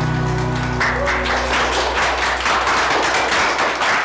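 Music holding a sustained chord, giving way about a second in to a burst of hand clapping.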